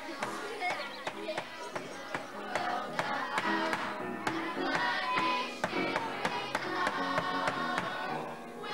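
A children's choir singing with piano, while sharp, irregular bangs from someone hammering at a briefcase cut across the singing, out of time with it.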